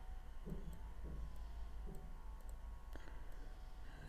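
Several faint computer-mouse clicks over a low steady hum.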